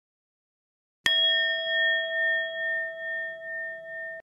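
A single bell-like ding struck about a second in: the notification-bell chime of a subscribe animation. It rings on with a slow, even wobble as it fades.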